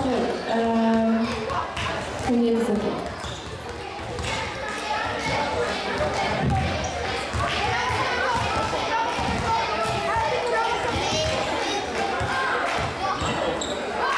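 Several basketballs bouncing on an indoor court's floor, many irregular thuds overlapping, with voices of people talking.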